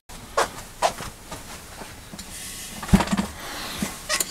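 Light metallic clicks of a steel rim-latch case and its small parts being handled, with one heavier thump about three seconds in as the case is turned over and set down.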